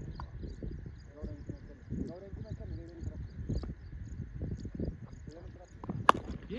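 Distant voices of cricket players calling out, with scattered light clicks and knocks.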